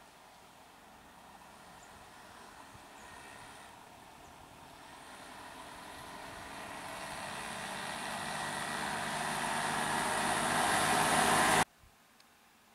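Auto-rickshaw engine approaching along the road, growing steadily louder over several seconds, then cut off abruptly near the end.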